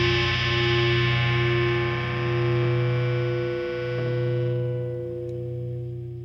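Music: a sustained distorted electric-guitar chord left to ring, its brightness and loudness slowly dying away as the nu-metal track fades out at its end.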